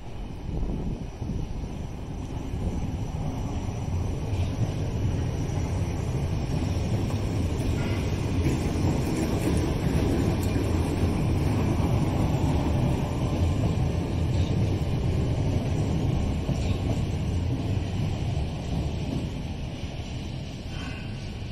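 Southern Class 455 electric multiple unit running past on the rails, a steady low rumble of wheels and running gear that builds to its loudest about halfway through and then eases off, with a few faint brief squeaks.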